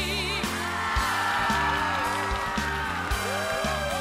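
Live band playing a fast rock arrangement: a steady drum beat and bass under a brass section of trombone, trumpet and saxophone holding long chords. A wavering, vibrato-laden sung note ends just after the start.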